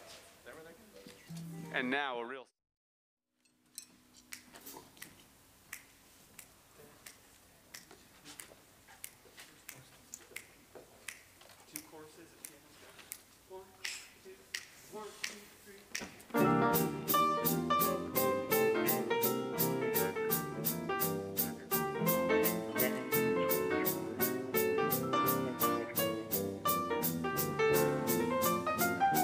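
A brief wavering tone, a second of dead silence, then quiet scattered clicks and taps. About sixteen seconds in, a jazz big band comes in together: saxophones, brass, piano and drums playing a tune over a steady beat.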